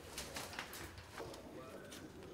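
Faint clicks and creaks of cane strands being threaded and pulled tight by hand in a woven basket, with a faint bird call in the background.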